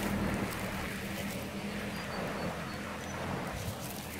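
Steady rush of flowing river water, with the low hum of a 4WD's idling engine fading out within the first second or so.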